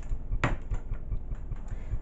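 A single sharp knock about half a second in, followed by a few faint ticks, over a low rumble of handling noise.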